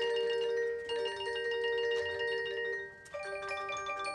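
Marching band front ensemble's keyboard percussion playing a soft, slow passage of ringing notes, a new note struck about every second and left to ring.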